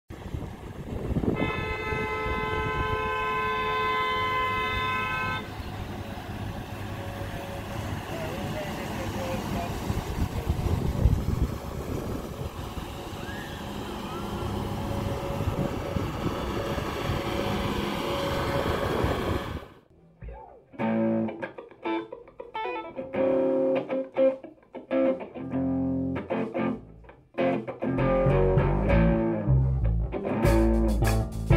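A canal water-taxi boat's horn sounds one long steady note for about four seconds over continuous outdoor noise. About two-thirds of the way in, the sound cuts off abruptly and guitar music with bass takes over.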